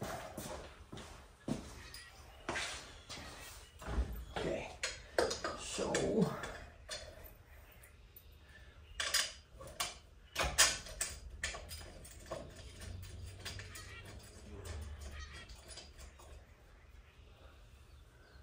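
Irregular clinks, clicks and knocks of metal hand tools, a socket wrench among them, being worked on an engine, with a dense run of clicks about ten seconds in.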